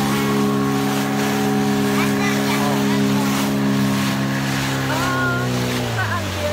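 Outboard motor of a small inflatable speedboat running steadily at speed, with water rushing past the hull. Near the end the engine note drops in pitch.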